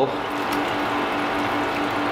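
Purple line cleaner splashing from a hand-pull beer engine's swan-neck spout into a plastic bucket as the handle is pulled, over a steady hum.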